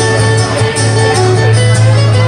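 Two acoustic guitars played together live, a steady run of picked and strummed notes.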